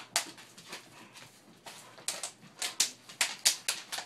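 Smooth collies playing with a stuffed toy on a wooden floor: a string of short scuffs and rustles from paws, claws and the toy, sparse at first, then bunched together in the second half.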